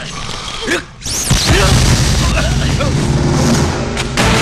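Film fight-scene soundtrack: a sudden loud boom with a sweeping whoosh about a second in, then a dense, steady rumble of score and sound effects with voices under it.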